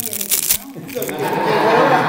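A spoon breaking into a crisp honey wafer on a dessert: a few short crackles in the first half second, then voices talking.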